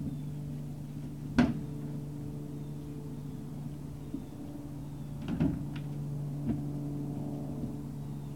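Hollow knocks of a Great Dane puppy bumping against a plastic doghouse as it climbs out: one sharp knock about a second and a half in, a quick cluster around five seconds and a lighter one soon after. A steady low hum runs underneath.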